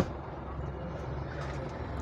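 Isuzu FRR truck's diesel engine running steadily, heard from inside the cab as a low, even rumble.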